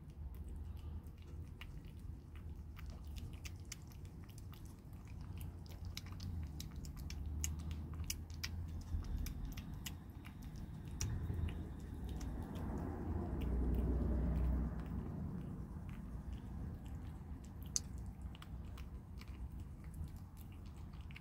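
A kitten eating chunky wet cat food from a plastic tub, with a quick, irregular run of small wet chewing and smacking clicks throughout. A louder low rumble swells for a second or two about two-thirds of the way through.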